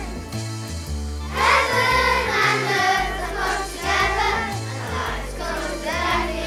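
Children's choir singing a Christmas song over an instrumental accompaniment with held bass notes that change every half-second to a second.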